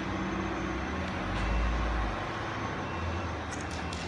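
Steady low background rumble and hum, swelling into a louder low rumble for about a second early in the middle. Near the end come a few short, faint scratches of chalk being drawn on concrete.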